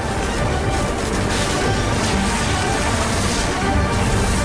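Loud dramatic film score mixed with a dense layer of action noise, steady throughout.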